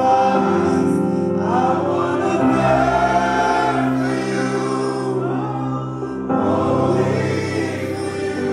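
Live gospel worship music: a male singer over held keyboard chords, with a group of voices singing along. The chords change twice, about two and a half seconds in and again near six seconds.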